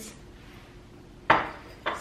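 A single sharp clack about a second into a quiet pause, as glass kitchenware is set down on a stone countertop.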